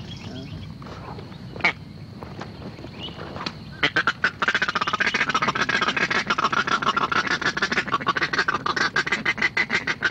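Ducks quacking in a fast, continuous chatter that starts about four seconds in, after a single sharp click.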